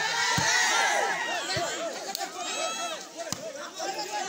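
Spectators shouting and calling over one another during a volleyball rally, loudest in the first second. Three sharp thuds of the ball being struck cut through the voices.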